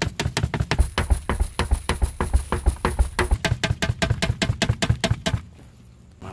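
Clear plastic debris canister of a carpet-cleaning vacuum being knocked out to empty the packed dirt, a fast, loud run of knocks about five or six a second that stops a little before the end.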